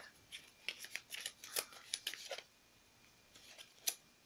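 Yu-Gi-Oh trading cards being handled: a quick run of light clicks and rustles for about two seconds, a short pause, then a few more with one sharper click near the end.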